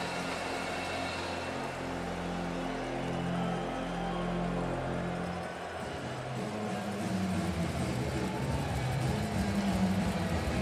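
Music with long held low notes, the chord shifting about halfway through, over a steady background din.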